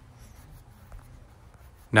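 Faint rubbing of a paper towel wiped across glossy car paint, clearing leftover hot-glue spots with acetone, over a low hum. A man's voice comes in at the very end.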